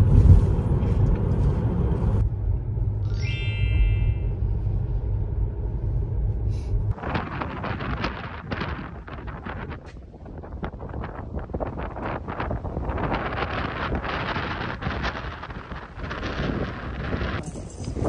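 Low road rumble inside a moving car, with a short chime about three seconds in. About seven seconds in it gives way to outdoor wind noise on the microphone, a rough hiss with crackles.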